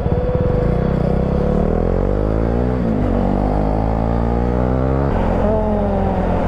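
Husqvarna 401 motorcycle's single-cylinder engine accelerating through the gears: its pitch climbs, dips at an upshift about three seconds in, climbs again, then drops suddenly near the end.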